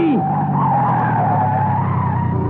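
Car tyres screeching in a long, wavering skid as the car brakes hard to avoid running a red light: a radio-drama sound effect heard through an old, narrow-band recording.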